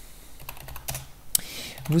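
Computer keyboard being typed on: a handful of separate, irregular key clicks as a short command is entered.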